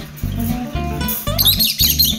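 Lovebirds chirping in a quick burst of high, bending chirps during the second half, over background acoustic guitar music with a steady beat.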